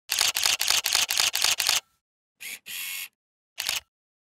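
Camera shutter sound effect: a rapid burst of seven shutter clicks, about four a second, then after a pause a short click with a brief steady whirr, and one more shutter click near the end.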